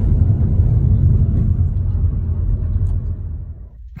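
Low rumble of a car rolling slowly, heard from inside its cabin, dying away shortly before the end.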